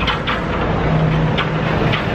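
Walt Disney World monorail train coming along its concrete beam overhead: a steady low hum.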